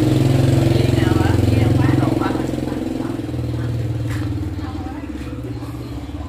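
A motorcycle engine idling steadily close by, growing gradually quieter in the second half, with faint voices over it.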